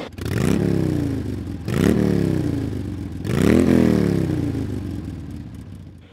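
Harley-Davidson Night Train V-twin engine revved three times, each blip rising sharply and then falling slowly back toward idle.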